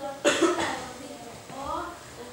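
A sharp cough about a quarter second in, then a child's voice speaking.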